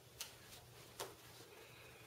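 Near silence, broken by two faint clicks, about a quarter-second and about a second in, from a deck of playing cards being handled and squared in the hands.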